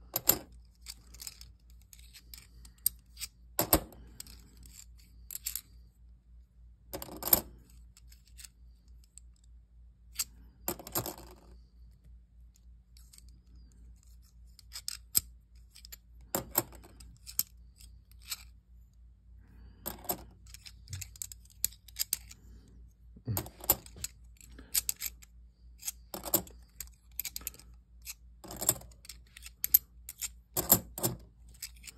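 Kennedy half dollars clinking against one another as they are flipped one at a time and set on a stack. The sharp metallic clicks come in small clusters every few seconds.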